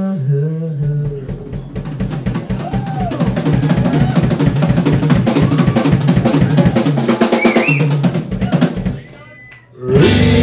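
Live Tama drum kit and electric guitar: a long, fast drum fill of snare and bass drum strokes under sustained guitar. The band cuts out abruptly near the end for a moment before coming back in loud.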